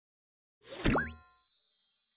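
Title-logo sound effect: after a brief silence, a quick whoosh ends in a sharp hit with a short rising blip, then a bright ding with a sparkling shimmer rings on and slowly fades.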